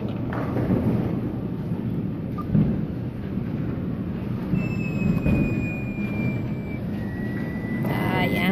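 Steady arcade background din, a dense low rumbling noise from the machines around the claw crane. A faint high electronic tone slides slowly down in pitch midway, and another rises slightly near the end.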